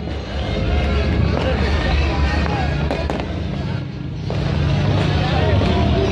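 Fireworks going off, a few sharp bangs over a loud, continuous mix of crowd voices and music.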